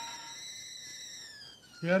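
Stovetop kettle whistling; the whistle slides down in pitch and fades away over the second half, as when the kettle is lifted off the heat.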